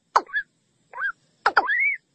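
Watercock calling: a string of short calls with gaps between, some notes sweeping quickly down and others rising, ending in one longer note that rises and then falls.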